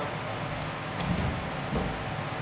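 Low, steady background noise of a large hall, mostly a dull low rumble, with a single faint click about a second in.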